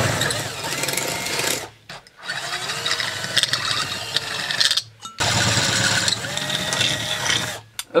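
Cordless drill boring through the metal pieces of a radiator cap held in locking pliers. It runs in three bursts of two to three seconds each, with short stops between.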